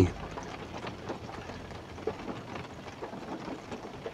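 Rain falling on a vehicle's roof, heard from inside the cabin: a steady faint hiss with many light, scattered drop ticks.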